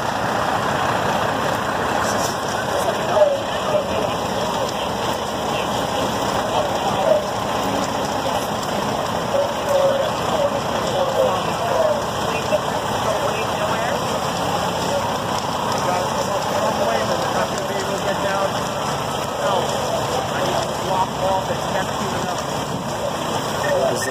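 Steady noise of a fully involved house fire burning, mixed with fire engines running at the scene, with indistinct voices throughout.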